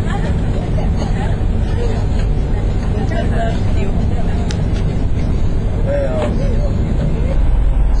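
Steady low rumble on a ferry's open deck, from wind on the microphone and the ship's engines, with faint voices of other passengers.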